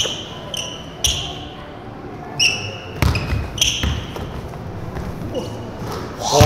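A basketball bouncing on a gym court, with a few sharp impacts and several short, high squeaks like sneakers on the floor.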